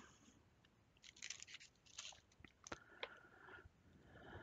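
Near silence with faint, scattered ticks and crackles of hands handling and rolling polymer clay on a smooth work board, and a brief faint squeak about three seconds in.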